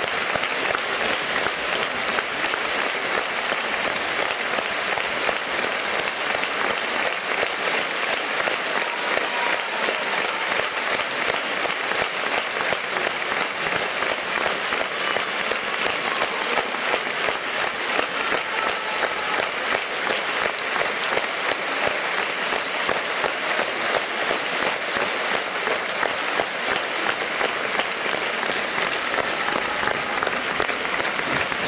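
Audience applauding steadily through a curtain call, a dense even clatter of many hands that neither builds nor fades.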